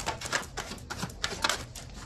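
Tarot cards being handled and shuffled by hand: a quick, irregular run of sharp clicks and light slaps of card against card.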